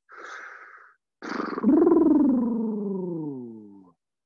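A person's quick breath in, then a long voiced exhale like a sigh that falls steadily in pitch and fades out over about two and a half seconds: an audible breath out while holding a yoga pose.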